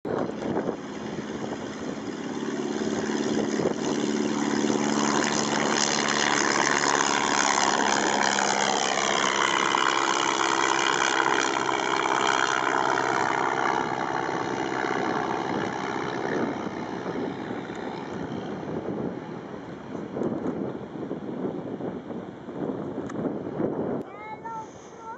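Single-engine light propeller aircraft flying past: the engine drone swells to its loudest about halfway through, with a sweeping, phasing whoosh as it passes, then fades away.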